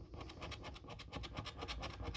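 A coin scratching the latex coating off a paper scratch card in rapid, even strokes.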